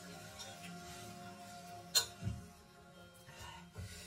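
Soft background music with long held tones, and a single sharp clink about two seconds in, a metal fork striking the ceramic bowl while scooping food, followed by a smaller knock.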